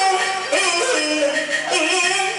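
Taiwanese opera (koa-á-hì) singing: a woman's voice sung into a handheld microphone and amplified, gliding from note to note over instrumental accompaniment.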